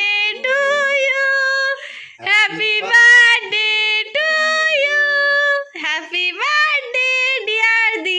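High female voices singing a birthday song in long held notes, breaking off briefly about two seconds in and again near six seconds.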